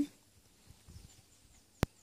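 A single sharp click near the end, against a quiet background.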